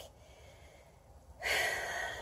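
A quiet pause, then a woman draws a long audible breath in, starting about one and a half seconds in and lasting about a second.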